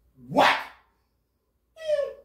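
Two short, high-pitched yelps about a second and a half apart, the second a falling squeal.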